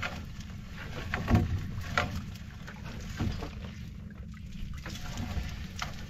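A wet gill net being hauled by hand into a wooden outrigger boat: several short slaps and splashes of mesh and water against the hull over a steady low rumble.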